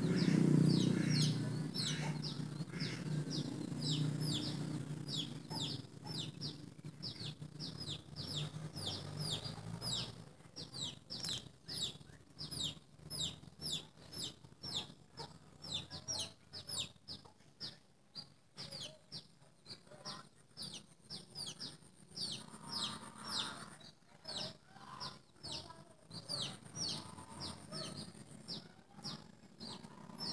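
Birds chirping rapidly and continuously: short, high chirps sliding downward, several a second, over a low rumble that fades out about ten seconds in. A faint steady high-pitched tone joins in the second half.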